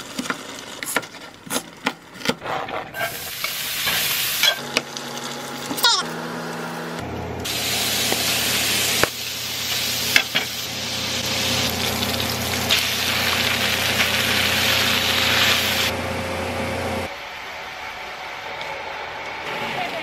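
A knife chopping onion on a cutting board, a few sharp knocks, then diced sausage sizzling in a stainless frying pan as it is stirred and turned with a spatula. The sizzle is loudest through the middle and drops off near the end.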